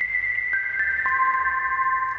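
A short melody from Ableton Live's Operator synth played back through a fully wet, long-decay reverb. It has clean single tones: a high note rings on, and lower notes come in about half a second and a second in. Each note sustains and overlaps the others in the reverb tail.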